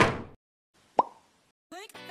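Cartoon sound effects: a loud hit right at the start that dies away within half a second, then a single short pop about a second in. A high-pitched, chirpy voice starts near the end.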